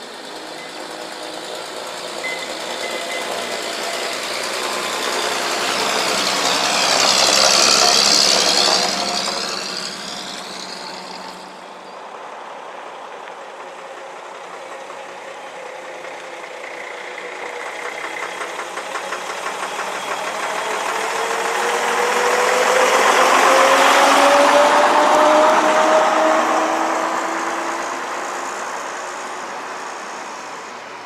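A Bedford 'Green Goddess' fire engine drives slowly past, its engine growing louder to a peak and fading away. Then a vintage double-decker bus pulls away and passes, its engine note climbing steadily as it accelerates, loudest about three-quarters of the way through.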